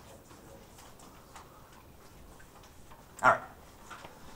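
A quiet room with faint scattered clicks, then one short vocal sound a little over three seconds in, falling in pitch.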